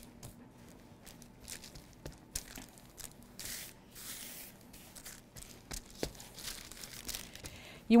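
Paper crinkling and rustling quietly under hands as they gather and press chive biscuit dough flat on a floured, paper-covered board, with scattered soft ticks and a longer rustle about halfway through.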